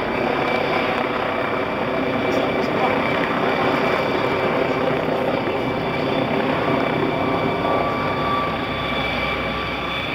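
Helicopter flying overhead: a steady drone of rotor and engine that holds at an even level throughout.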